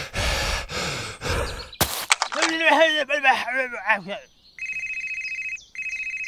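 A short noisy rush ending in a click, then a high-pitched cartoon-style voice for about two seconds. From about halfway in, a telephone ringtone: a steady high electronic tone in two rings with a brief break between them.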